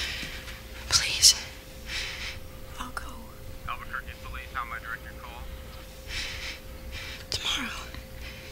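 Soft, breathy speech and whispering, in short phrases with pauses between them.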